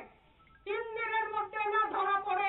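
A woman's voice shouting through a microphone in long, drawn-out, high-pitched calls. The voice breaks off at the start and comes back after a short pause.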